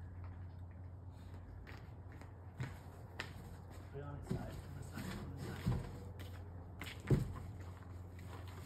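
Cardboard box being handled and lowered over a towel, with several knocks and scuffs, the loudest about seven seconds in, over a steady low hum. Faint voices murmur around the middle.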